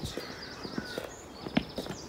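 Footsteps of someone walking on outdoor steps, a sharp step about every half second. Small birds chirp in the background.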